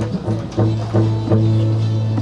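Live band starting to play: a few plucked notes, then about half a second in a held low bass note comes in under steady chord tones that carry on to the end.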